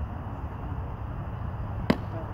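A single sharp pop near the end: a pitched baseball smacking into the catcher's leather mitt, over a steady low outdoor rumble.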